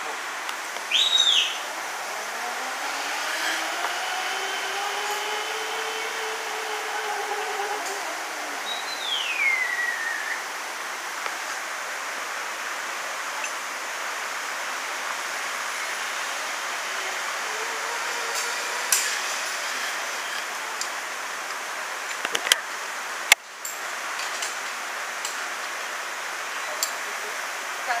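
A zip line trolley running out along the steel cable, its pulley whining as it rises and then falls in pitch over several seconds, over a steady hiss. A sharp whistle sounds about a second in, and a falling whistle comes soon after the trolley fades.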